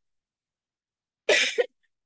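A woman coughing once, a short sharp cough, after about a second of silence.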